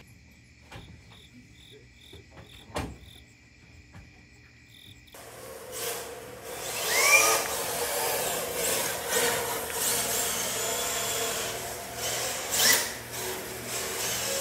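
Crickets chirping at night, faint high chirps repeating a few times a second. About five seconds in it gives way to a radio-controlled drift car running on a concrete floor, its small electric motor whining up and down over a rushing noise, with a few sharp knocks.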